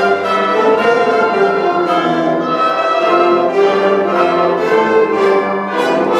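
High school concert band playing a fanfare: brass and woodwinds hold full chords that change every second or so, with a few percussion strikes.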